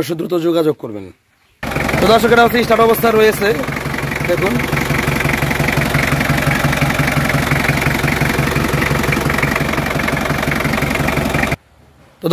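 Diesel engine of an old Mitsubishi pickup idling steadily with an even pulse; it cuts in about a second and a half in and cuts off just before the end, with a man's voice over it briefly at first.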